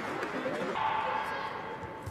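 Judo arena ambience with indistinct background voices. A steady, held tone lasting about a second sounds through the middle.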